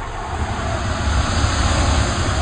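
A loud rushing noise over a deep rumble, building over the two seconds, like an aircraft passing.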